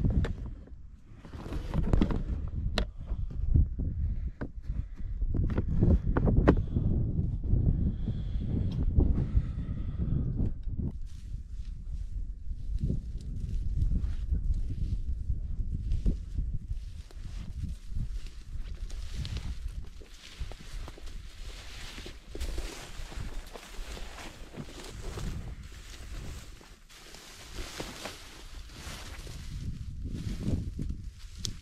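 Footsteps walking over brushy ground with rustling of clothing and carried gear: uneven thumping steps through the first half, then a steadier, lighter rustling.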